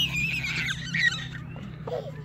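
A toddler squealing in high-pitched, gliding shrieks, loudest about a second in, then stopping.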